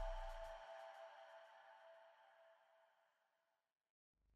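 The closing notes of a short logo jingle ringing out and fading away, gone about three seconds in.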